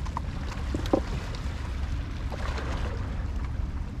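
Steady wind rumble on the microphone over small waves lapping against shoreline rocks.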